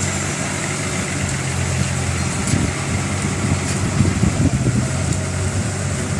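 Bus engine idling with a steady low hum.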